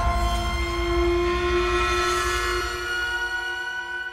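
Horror film score: a dense cluster of held, dissonant tones, like a horn chord, slowly fading away.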